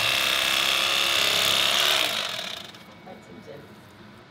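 Electric carving knife running, its twin serrated blades sawing through roast turkey with a steady motor buzz. The knife stops a little over two seconds in.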